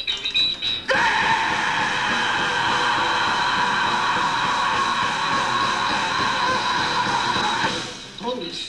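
Live rock band playing loud through a club PA: about a second in, a sustained distorted chord rings out and holds steady for several seconds, then dies away near the end.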